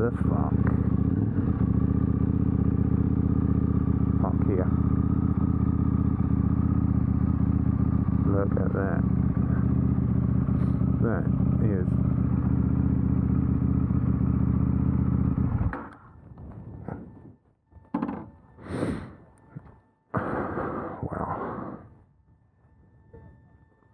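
KTM 890 Duke R's parallel-twin engine idling steadily as the bike rolls to a stop, then switched off about sixteen seconds in. A few brief knocks and rustles follow.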